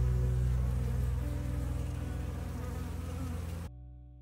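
Honeybees buzzing as they fly around a hive entrance: a steady hum of many overlapping wingbeat pitches. It cuts off suddenly near the end.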